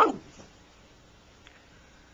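A man's voice trails off at the start, then a pause of faint hiss from an old recording, with one small click about a second and a half in.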